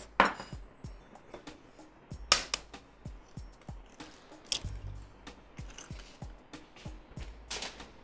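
Eggs being cracked into a glass mixing bowl: three sharp taps of shell on the bowl, about two to three seconds apart, over soft background music.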